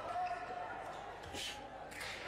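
A sharp thud about a second and a half in, with a fainter one near the end: fencers' feet stamping on the piste. Voices carry over the echoing hall.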